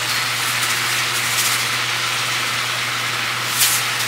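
Ground beef sizzling in a skillet on the stove: a steady frying hiss over a low hum, with a brief sharp sound near the end.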